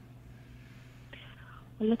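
A pause in a telephone conversation: a steady low hum on the line, a faint breath or whisper over the phone about a second in, then a caller starts speaking just before the end.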